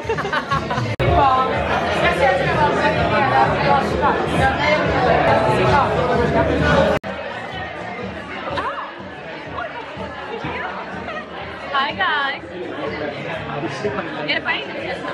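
Several people chatting and laughing over one another, with background music, during the first half; after an abrupt cut about halfway through, quieter overlapping chatter of a group in a large room.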